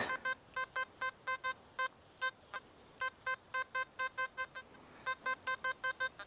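XP Deus metal detector sounding a target: runs of short, high beeps, about six a second, as the coil is worked back and forth over a signal reading in the low to mid 80s, broken by brief pauses about two seconds in and near the end. The signal is not very loud.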